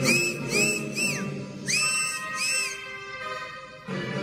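A run of high whistles, each note rising then falling in pitch: four quick ones in the first second or so, then two longer ones, over quieter marinera music. The full band comes back in loudly near the end.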